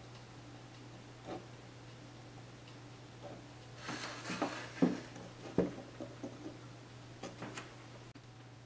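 Soldering iron being lifted off a 3D-printed part and set down: a cluster of rustles and sharp knocks about four to six seconds in, then a few light clicks, over a faint steady low hum.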